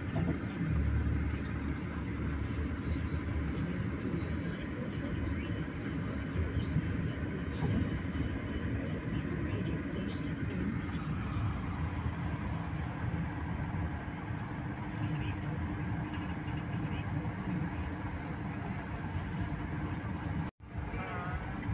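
Steady road and engine noise of a car driving on a highway, heard from inside the cabin, with a heavier low rumble for the first few seconds.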